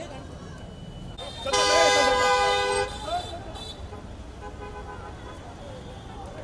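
A vehicle horn sounds one steady blast lasting just over a second, about a second and a half in. Crowd chatter and street traffic run underneath.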